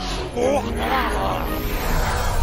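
A rough, growling roar from a monster character, over background music.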